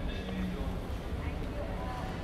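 Street ambience: voices of passers-by talking, over a steady low rumble of city noise.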